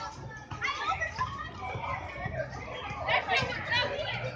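Children's and young people's voices shouting and chattering over one another, with no clear words, loudest near the end.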